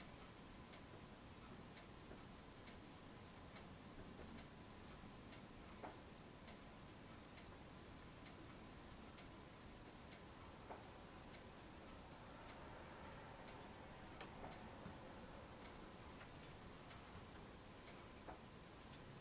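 Near silence: room tone with faint, evenly spaced ticks running on throughout, and a few soft knocks.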